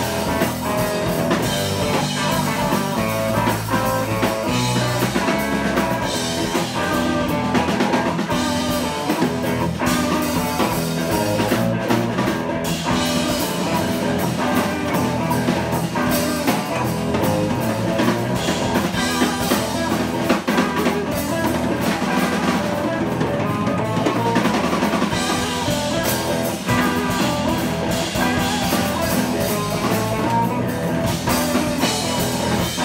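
Instrumental trio playing live: electric guitar, electric bass and drum kit, continuous and steady throughout.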